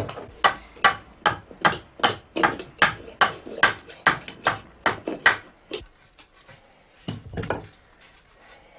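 Hammer knocking steadily on a wooden ash hurley held upright on a chopping block, about two and a half blows a second. The blows stop about five seconds in, and two or three more knocks come near the end.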